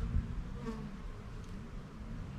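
Honeybees buzzing in flight close by, the hum rising and falling in pitch as they pass, with a low thump just after the start.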